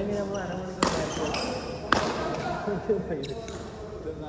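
Two sharp cracks about a second apart, badminton rackets striking a shuttlecock, over background voices.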